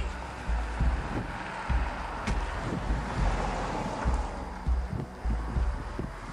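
Wind buffeting the microphone in uneven gusts, over a steady hiss.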